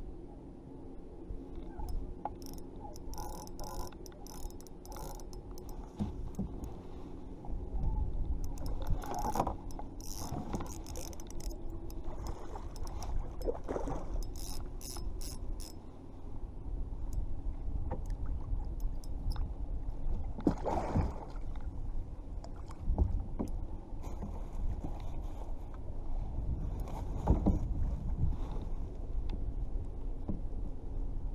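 Fishing reel being cranked, a steady gear hum through the first dozen seconds, while a hooked striped bass is brought to the side of a kayak. Water splashes several times and wind buffets the microphone.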